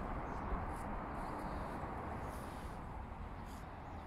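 Steady, low outdoor background noise, with a few faint short sounds on top and no clear single source.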